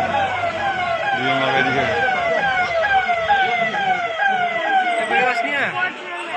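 Police siren sounding in a fast repeating cycle, each cycle a quick downward sweep in pitch, about two a second.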